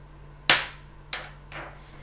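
Hard objects knocking on a wooden tabletop as gear is handled: a sharp knock about half a second in, another about a second in, and a softer one shortly after.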